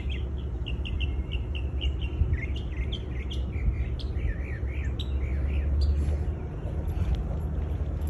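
Small songbirds chirping: a run of short, repeated high notes, several a second, over a steady low rumble.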